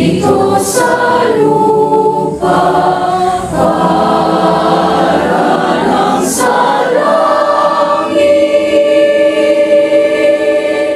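Mixed youth choir of girls and boys singing in harmony, then holding one long chord from about seven seconds in.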